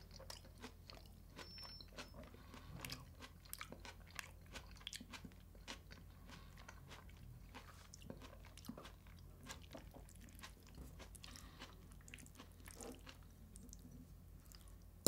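Faint, close-miked chewing of herring in tomato sauce with Puszta salad of paprika, cucumber and celery: a steady run of many small crunching clicks.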